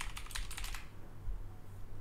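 Typing on a computer keyboard: a quick run of key clicks that stops under a second in, leaving only a faint low hum.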